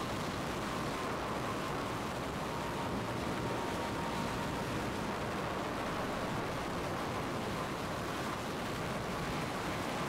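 Steady rushing roar of tornado wind from a storm film's soundtrack, played back over the hall's loudspeakers, with a faint steady whine above it.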